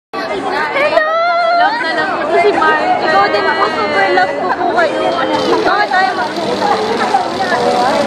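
Speech: women talking close to the microphone, with background chatter.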